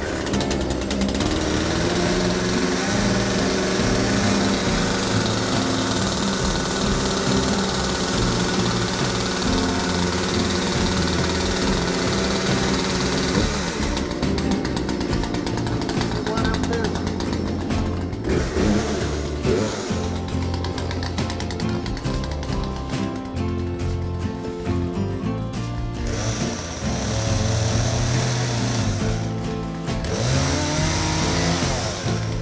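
Background music with a steady beat and a singing voice, changing in texture about halfway through.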